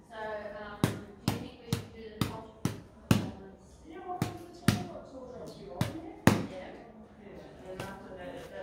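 A homemade poi, a ball stuffed with plastic and sealed with sellotape on a cord, being swung and struck against the hand and arm. It gives about ten sharp taps at roughly two a second: a run of six, then two quick pairs. A woman's wordless voice sounds between the taps.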